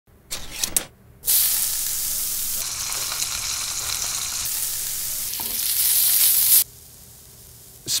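A few sharp clicks as a ring-pull tin of SPAM luncheon meat is opened. Then diced SPAM frying in a pan with a loud, steady sizzle as it is stirred with a spatula, cutting off suddenly about five seconds later.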